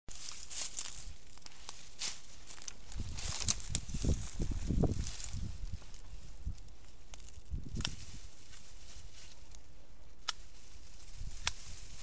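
Leafy hisakaki (Eurya japonica) branches rustling as they are handled and harvested from the shrub, with scattered sharp clicks. A run of low thuds falls in the middle and another just before the last third.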